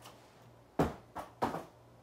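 Three knocks in quick succession about a second in, the first the loudest: a toy's cardboard box being put away in a wooden cupboard.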